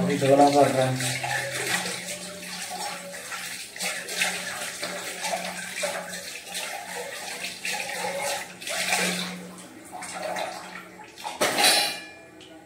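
Water running from a kitchen tap while dishes are washed in the sink, with short knocks and clatter of steel utensils, and a louder rush of water near the end.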